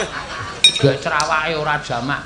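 A few short, ringing metallic clinks over men talking.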